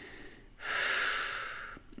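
A woman takes one long, audible breath, starting about half a second in and fading away over roughly a second.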